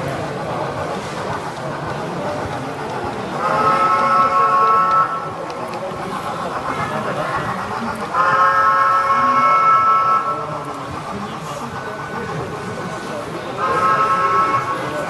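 Steam locomotive chime whistle from an HO-scale model train's sound unit, sounding three long blasts of several notes at once; the last starts near the end. Under it runs the steady murmur of a crowded exhibition hall.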